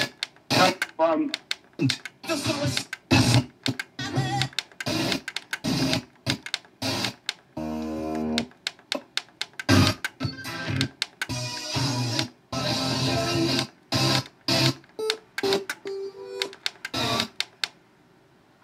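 FM radio from an Onkyo TX-910 receiver's tuner through a loudspeaker as it is stepped up the band: a string of short snatches of music and talk from one station after another, each cut off abruptly with brief silent gaps between. About eight seconds in, one station gives a steady held tone.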